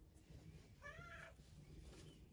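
A single faint, short high call with a wavering pitch, about half a second long, about a second in, over a low background hum.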